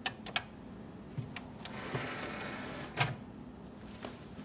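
A disc clicking into place on a DVD player's open tray, then the tray motor whirring shut for about a second and ending in a clunk.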